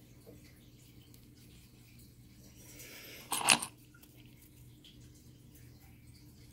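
Stone artifacts clinking together, one short clatter about three and a half seconds in as a piece is handled among the others in the bowl. Otherwise faint room tone with a low hum.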